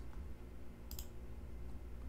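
Two quick, faint computer mouse clicks about a second in, over a low steady hum.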